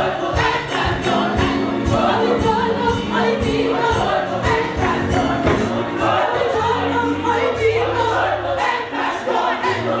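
Gospel mass choir singing with live band accompaniment: many voices together over a bass line and a steady drum beat.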